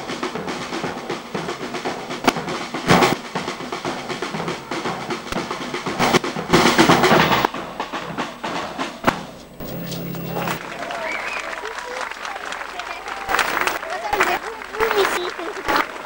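Street band of bass drums beaten with mallets and a snare drum played with sticks, drumming a rhythm, with crowd voices mixed in.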